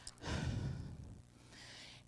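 A woman's sigh, breathed close into a handheld microphone, lasting under a second, followed by a fainter breath just before she speaks again.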